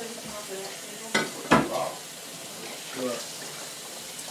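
Dishes knocking together as they are handled at a kitchen counter: two sharp clinks close together a little over a second in, the second louder, over a steady background hiss.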